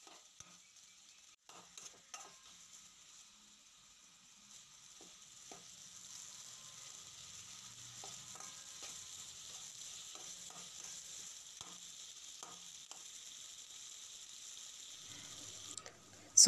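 Chopped tomatoes, onions and green chillies sizzling faintly in oil in an aluminium kadai, a metal spatula stirring and scraping the pan with scattered light clicks. The sizzle becomes steadier about a third of the way in.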